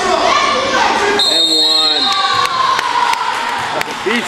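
Basketball bouncing on a gym's hardwood court amid players' and onlookers' voices and shouts.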